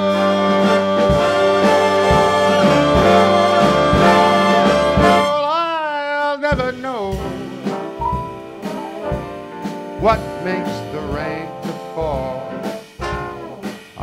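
Big-band jazz orchestra playing a loud, sustained brass chord for about five seconds, which ends in a wavering slide. It is followed by a quieter instrumental passage with brass lines and sharp drum accents.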